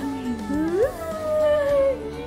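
A woman's long, high-pitched "fuuuu" whoop of delight: the pitch rises sharply, then is held and slowly slides down, over background music.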